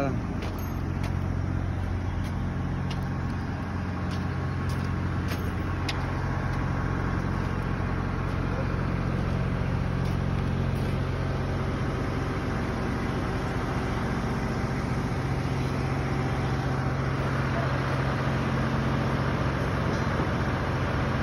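A heavy diesel engine running steadily at a constant speed: a low, even drone. A few light clicks and knocks are heard in the first six seconds.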